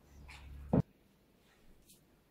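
Gloved hands kneading bread dough in a plastic bowl, a low rumbling working that ends in one short, sharp thump about three-quarters of a second in.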